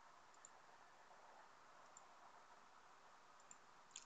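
Near silence: faint room tone with a few soft, sharp clicks, about half a second, two seconds and three and a half seconds in.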